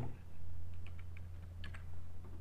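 Computer keyboard typing: a short run of light keystrokes as a number is entered into a form field.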